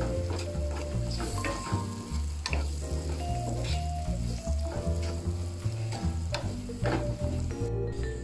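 Onions, garlic and ground spices sizzling in a frying pan as a wooden spatula stirs and scrapes them, under background music with a steady bass line.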